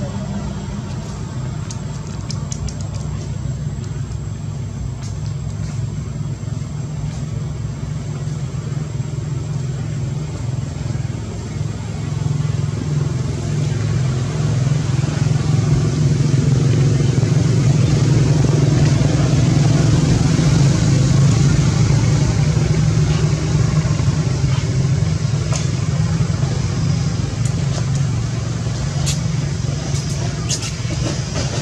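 Steady low rumble of a motor vehicle engine, growing louder through the middle and easing again near the end.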